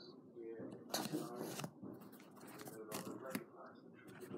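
Paper rustling and crinkling as a paper flap door in a paper wall is pushed open by hand, in short bursts around a second in and again near three seconds, with a low voice under it.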